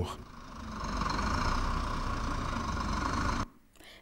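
Heavy truck's diesel engine running at idle, a steady low rumble that cuts off abruptly about three and a half seconds in.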